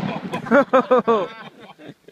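The echo of a rifle shot fading away, then a man laughing in several quick bursts from about half a second in.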